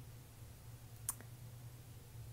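A single short, sharp click about halfway through, with a fainter second tick right after it, over a faint steady low hum.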